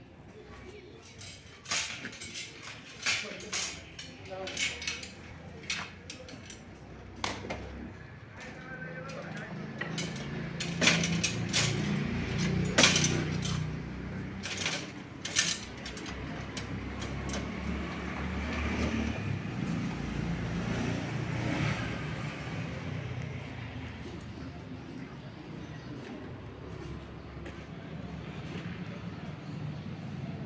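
Steel angle-iron carrier frame and its hanging chains clanking and rattling as it is handled and set onto a motorcycle, with many sharp metal clinks over the first half. A low steady rumble builds from about ten seconds in.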